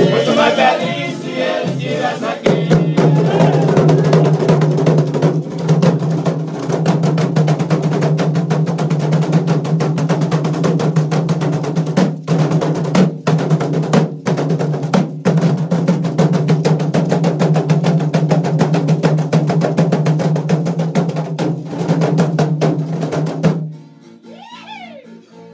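Leather-headed folia drum (caixa) played in a fast, continuous roll, with singing in the first couple of seconds; the drumming cuts off abruptly near the end.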